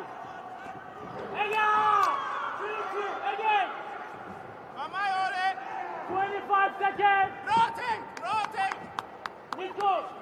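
Loud shouting voices from the sidelines of a taekwondo bout, in several bursts, in a large echoing hall. A few sharp slaps come near the end.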